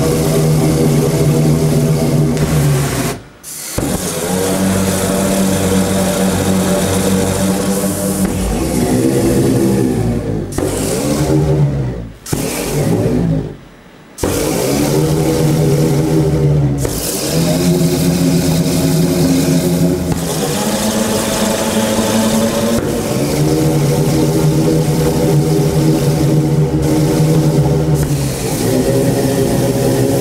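LPG-fired pyrophone (flame organ) pipes sounding a series of long, held low notes with strong overtones over a rushing hiss of burning gas, each note bending in pitch as it starts and stops. The sound drops out suddenly about three seconds in and again around twelve to fourteen seconds.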